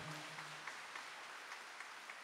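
Audience applauding, faint and even, a steady patter of many hands clapping.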